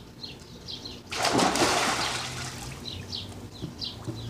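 A person diving into a swimming pool: a sudden splash about a second in, its noise of churning water fading away over the next couple of seconds.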